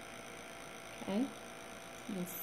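Low steady background hiss of a quiet room, with one short spoken "Okay?" about a second in.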